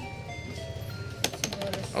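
Electronic sounds of a fruit slot machine (maquinita): a short falling run of beeping tones, then, just past a second in, a quick run of sharp ticks as the lights chase around the symbol ring during a spin.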